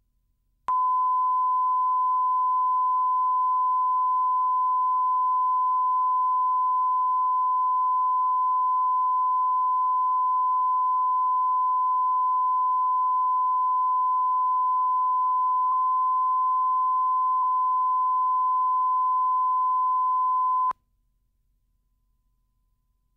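Videotape line-up test tone, the steady reference tone laid on the tape leader with colour bars for setting audio levels. One unchanging pure tone switches on just under a second in and cuts off sharply about twenty seconds later.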